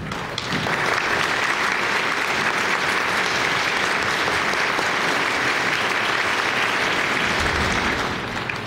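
Audience applause, a steady dense clapping that swells in about half a second in and holds until it dies away at the end.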